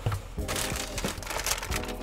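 Wrapping paper rustling and crinkling as a boot box is unpacked by hand, in irregular strokes over a steady music bed.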